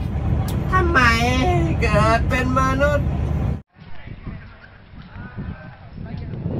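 Traffic rumble beside a road, with two long wavering cries from a voice about one and two seconds in. After about three and a half seconds it cuts off suddenly to a quieter background with faint voices.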